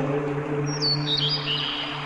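A low plucked guzheng note rings and slowly fades while a bird gives a few short, falling chirps about a second in, over a steady background hiss.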